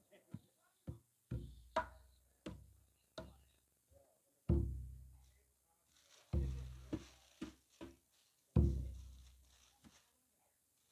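Javanese kendang drum played alone at an uneven pace, a mix of light slaps and a few deep booming strokes that each ring for a second or so before dying away.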